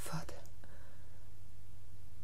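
The breathy, whispered tail of a voice in the first half-second, then a pause in the dialogue filled only by the recording's steady low hum and hiss.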